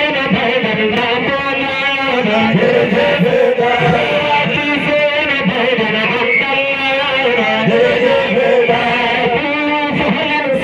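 One man singing a Sufi zikr (devotional chant) into a handheld microphone, in long, held, melodic phrases that run on without a break.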